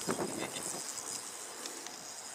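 Insects buzzing in a steady high-pitched drone, with a few faint clicks about half a second in.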